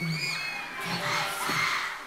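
K-pop song's backing track with a steady beat, under high-pitched screams and cheering from the studio audience.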